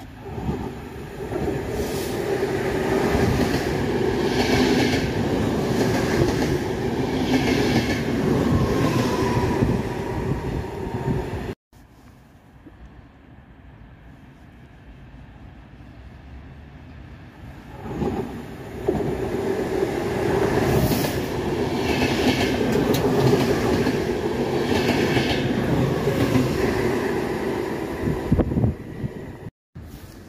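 A train running on the rails, with a loud rumble and repeated wheel clatter over the track. It drops away abruptly about a third of the way in, stays much quieter for several seconds, then builds up loud again and cuts off just before the end.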